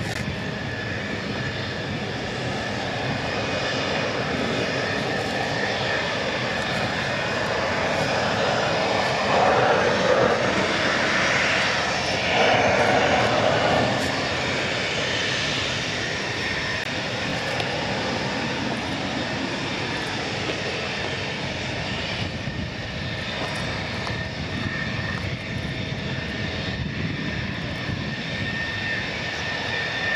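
F-16 fighter jets taxiing, their jet engines running as a steady rushing noise with a high, even whine. The noise swells louder twice near the middle as jets pass close by.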